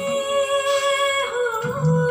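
A recorded song: one long sung note, bending slightly in pitch about halfway through, with a deep drum stroke near the end.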